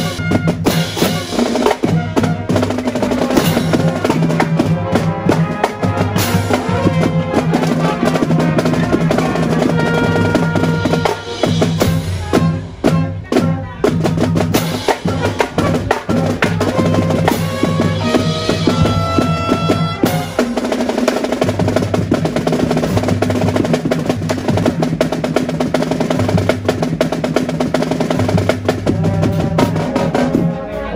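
Marching drum corps playing: snare and bass drums with brass, and a marimba played with mallets.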